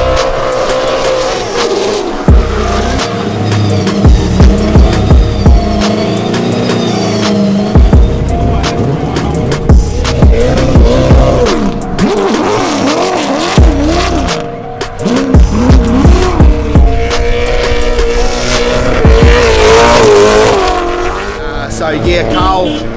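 Nissan S15 drift car sliding on the track, its engine revs rising and falling repeatedly as the tyres squeal, mixed under background music with a steady beat.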